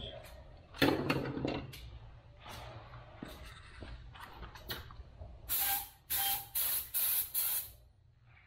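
Compressed-air spray gun fired in five short hissing bursts in quick succession, the trigger pulled and released each time, a small gravity-feed Harbor Freight paint gun. A brief clattering handling noise comes about a second in.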